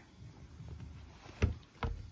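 A cotton drawstring bag rustles as a fabric needle case is pulled out of it. Then come two thumps about half a second apart as the case is set down on a wooden tabletop.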